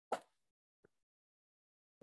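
One brief, sharp pop just after the start, a much fainter tick a little later, then near silence.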